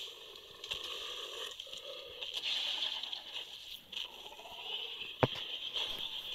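Quiet night-forest ambience from a film soundtrack: a small fire crackling faintly under a steady high hiss, with one sharp click near the end.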